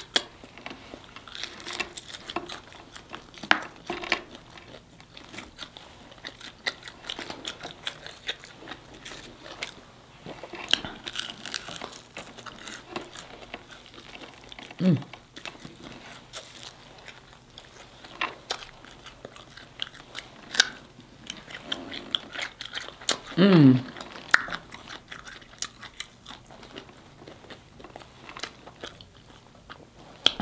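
Close-up eating sounds: biting and chewing crispy fried chicken wings, with crunching of the fried coating and wet mouth sounds. Two short hums of approval break in, about halfway through and again a little later, each falling in pitch.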